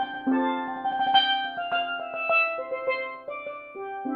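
Steelpans built by Steve Lawrie, played with five mallets: chords and single notes struck and left ringing into each other in a slow, free improvisation.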